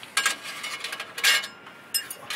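Metal exhaust pipe fittings clinking as a pipe section and clamp are fitted by hand, two bunches of ringing metallic clinks about a second apart.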